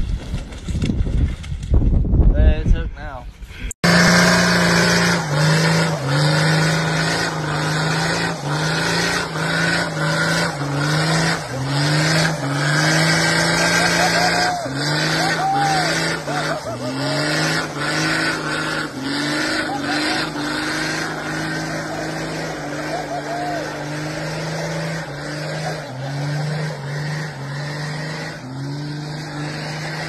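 Lifted Toyota Land Cruiser 4x4 doing a burnout: the engine is held at high revs, its pitch stepping up and down as the spinning rear tyres grip and slip, with short tyre squeals over it. Before that, for the first few seconds, a loud rough rumble.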